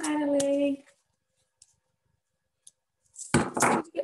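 A woman's voice holding a short, steady hum-like sound for under a second, then, about three seconds in, a burst of paper and handling noise as stiff phonics flashcards are moved and lowered.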